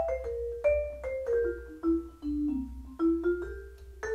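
Vibraphone played with Mike Balter Titanium Series 323R mallets at a moderate volume: about a dozen struck single notes and chords, each ringing on. A melodic line steps down in pitch through the middle and jumps back up near the end.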